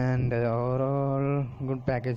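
A man's voice holding one long, level vowel for about a second and a half, then a short syllable or two.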